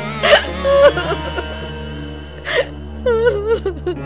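A woman sobbing and wailing in short, breaking cries with a wavering pitch, over a steady background music drone.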